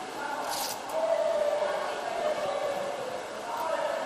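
Indistinct voices carrying across a tiled indoor swimming hall, with a short hiss about half a second in.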